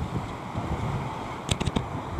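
Small waves breaking and washing up the sand, with wind buffeting the microphone. A quick run of clicks about one and a half seconds in.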